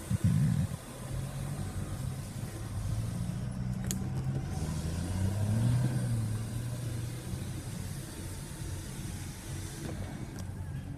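A 2015 Buick Verano's engine running at idle, heard from inside the cabin, with a low thump right at the start and a short swell and slight rise in pitch about five to six seconds in. A sharp click sounds about four seconds in.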